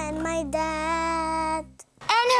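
A child singing a short jingle over a steady backing track, holding one long note in the second half; voice and music cut off suddenly just before the end.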